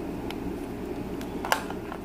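Small plastic clicks from handling a cordless phone handset as its battery pack is fitted: a few faint ticks and one sharper click about one and a half seconds in, over a steady low background hum.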